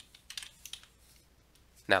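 A quick run of short, sharp clicks, like computer keystrokes, in the first second, made as the on-screen page is cleared. A man's voice starts at the very end.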